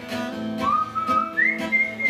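Steel-string acoustic guitar strummed, with a whistled melody over it. The whistling comes in about half a second in with a note that slides up, then jumps to a higher note held to the end.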